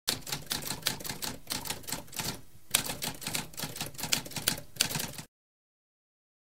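Typewriter sound effect: a fast, uneven run of mechanical keystrokes clacking, with a brief pause a little over two seconds in. It stops abruptly about five seconds in.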